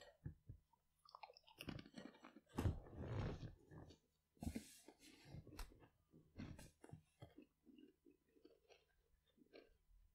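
Faint, irregular crunching and rustling in short bursts from a person moving close to the microphone.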